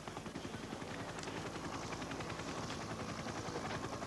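Helicopter rotor chop, a steady rapid beat of even pulses.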